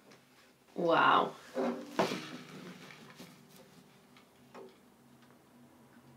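A short wordless vocal exclamation about a second in, then handling noise as a steel-string acoustic guitar is lifted out of its hard case: a sharp knock about two seconds in, followed by a few lighter clicks and a faint ringing tail.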